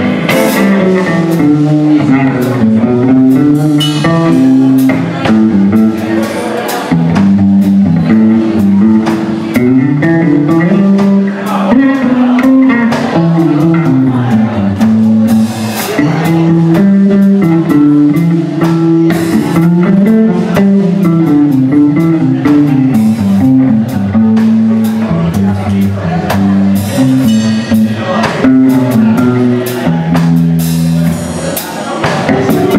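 A live blues band playing an instrumental passage: electric guitar over a bass line that steps up and down, with a drum kit keeping time.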